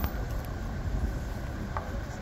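Outdoor street background: a steady low rumble of road traffic.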